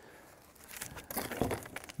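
A large cardboard sheet being handled and set down: a run of short crinkling rustles and scrapes in the second half, with a dull knock about a second and a half in.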